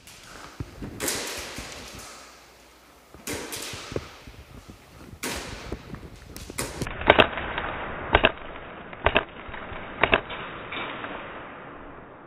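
Airsoft gunfire echoing around a large warehouse hall: three bangs with long ringing tails about two seconds apart, then a run of sharper double cracks about once a second.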